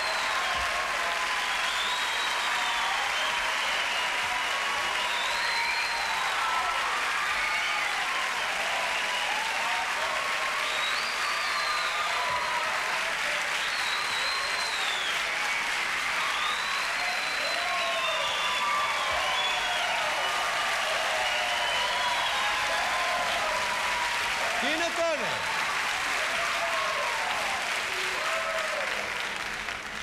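A studio audience applauding steadily, with voices calling out and cheering over the clapping. The applause dies down near the end.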